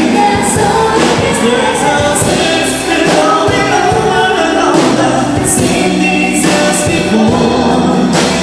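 Live pop-rock band playing, with drum kit and cymbals and singing over it.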